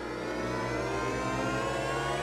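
Sound effect from a TV commercial's soundtrack: a steady buzzy tone with many overtones, gliding slowly upward in pitch like an engine revving up.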